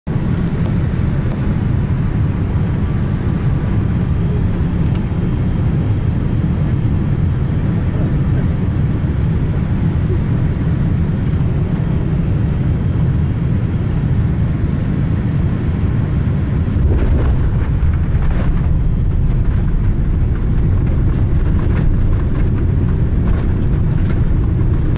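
Jet airliner heard from inside the cabin as it rolls on the ground: a loud, steady low rumble of engines and wheels. It gets a little louder about two-thirds of the way through, with a few light knocks.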